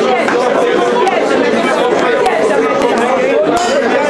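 A congregation praying aloud all at once, many voices overlapping into a steady, unintelligible din with no pauses.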